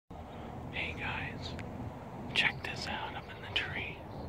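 A person whispering three short soft phrases over a steady low background rumble.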